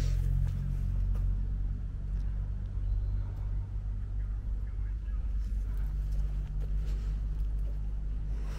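A steady low drone made of a few constant deep tones, starting abruptly and holding with little change: one of the scary sounds heard in the ruin.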